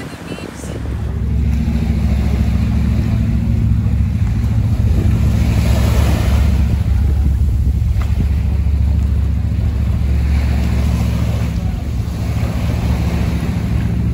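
Small sea waves washing onto a sandy beach and around rocks, swelling and fading every few seconds, under a loud, steady low rumble.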